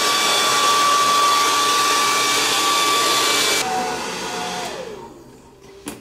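Compact handheld hair dryer blowing hair dry, a steady whine with a rush of air. About three and a half seconds in it drops to a lower, quieter tone, then winds down and stops near the end.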